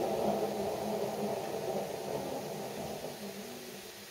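Fan-assisted Boilex Ultraclean 1 stove running: its fan and fan-forced flame make a steady low rushing noise that fades evenly as the fan is turned down and the burn's power drops.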